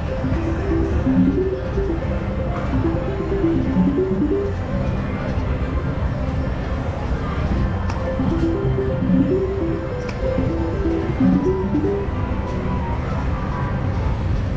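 Slot machine playing short electronic melody notes in repeated runs as its reels spin, over a steady din of casino noise.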